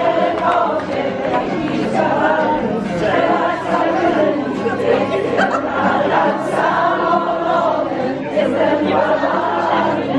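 A group of people singing a song together, with an accordion playing along underneath.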